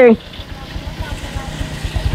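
A small engine running at low speed, a low uneven pulsing.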